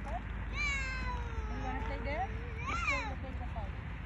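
A high voice making two drawn-out wordless calls: a long one that slides downward over about two seconds, then a short call that rises and falls about three seconds in.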